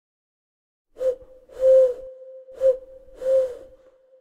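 Four breathy hoots on one steady pitch, short, long, short, long, starting about a second in, with the tone lingering faintly after the last one.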